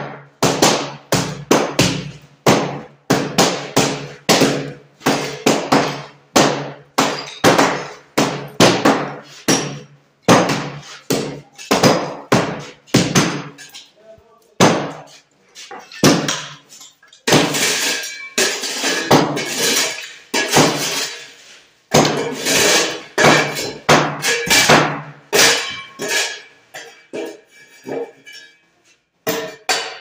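Hammer blows breaking up old floor tiles, striking about twice a second in runs broken by short pauses.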